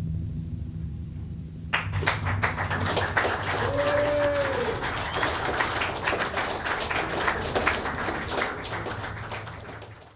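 Audience applause breaks out about two seconds in and continues over a low electronic drone, with a brief voiced cheer around the middle; everything fades out at the very end.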